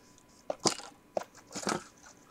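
Crinkling and crackling of a clear plastic sleeve holding a stack of paper cupcake liners as it is handled, in a few short bursts.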